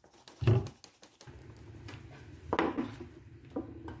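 Leather strap and workpieces knocking and sliding on a wooden tabletop as they are handled: one loud knock about half a second in and two lighter ones later. A steady low hum comes in about a second in and continues.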